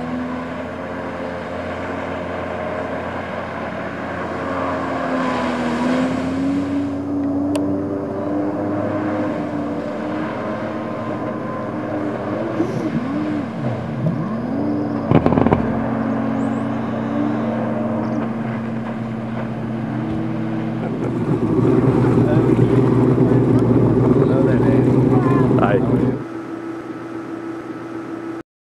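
Jet ski engine running, its pitch rising and falling as it is throttled, with a louder, rougher burst of throttle about 21 seconds in that lasts about five seconds and cuts off suddenly. A single sharp thump about halfway through.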